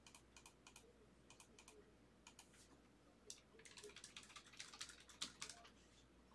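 Faint typing on a computer keyboard: a run of quick keystroke clicks that comes thicker in the second half.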